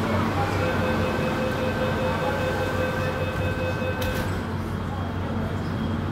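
Metro train door-closing warning tone, a steady high signal lasting about three and a half seconds, ending as the train doors and platform screen doors shut with a thud about four seconds in. A low station and train hum runs underneath.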